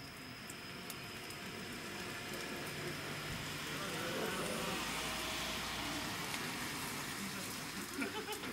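A group of baseball players' voices calling out together, swelling about four seconds in as the two lined-up teams bow to each other, over a faint steady high tone.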